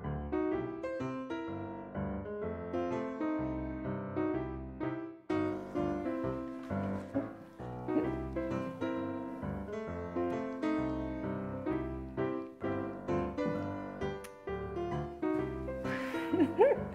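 Piano music with a steady low bass line under a melody of struck notes, growing fuller about five seconds in.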